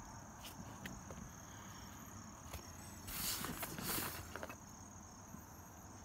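Rustling and handling noise of loose items being rummaged through and pulled out, loudest from about three to four seconds in, over a faint steady high-pitched trill.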